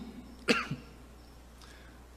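A man's single short cough, about half a second in.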